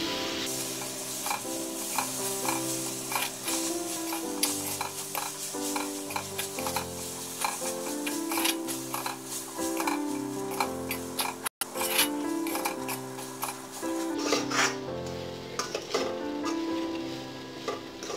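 Spoon stirring and scraping crumbly semolina around an iron kadhai, with frequent clicks of the spoon against the pan, over background music of held notes changing in steps.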